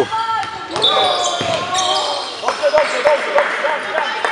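Basketball game in a gym: a ball dribbled on the court floor, with three bounces in quick succession near the end, amid shouting voices of players and spectators, and a short high squeal about a second in.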